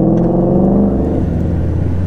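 Honda GL1800 Goldwing's flat-six engine running under way, heard from the rider's seat with road and wind noise. Its pitch climbs for the first second, drops a little, then climbs slowly again.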